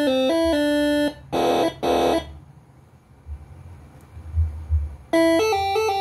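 A Moreno MS5 telolet air-horn module playing one of its melodies: bright, buzzy tones stepping from note to note. The melody breaks off about a second in and is followed by two short noisy blasts. After a quiet pause of about three seconds, a new melody starts near the five-second mark.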